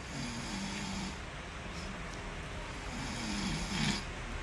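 A man snoring in his sleep: two long, low snores, one just after the start and one near the end.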